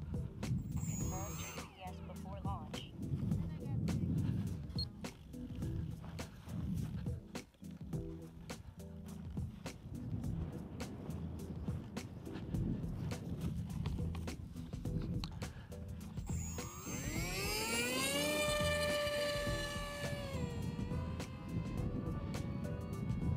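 An RC plane's electric motor and propeller spin up about three-quarters of the way through, a whine rising steeply in pitch and then holding steady for takeoff. Before that there is a low rumble with many small clicks.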